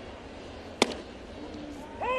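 A 98 mph four-seam fastball popping into the catcher's mitt about a second in: one sharp crack over a steady stadium crowd murmur.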